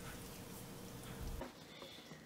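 Faint wet stirring of a wire whisk through thick waffle batter in a stainless steel bowl, over a faint steady hum that cuts off about one and a half seconds in.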